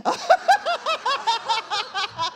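A woman laughing into a handheld microphone: a quick run of short pitched bursts, about five a second.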